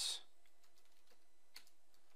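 Faint computer keyboard typing: a few scattered keystrokes over a low background hiss.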